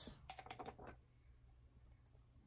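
Faint small clicks and rustles of hands handling a ceramic mug and its paper design while taping it on, mostly in the first second, then near silence.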